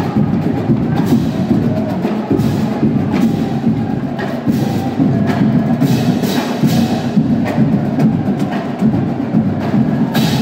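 Marching drumline of snare drums and multi-tenor drums playing a fast, continuous cadence.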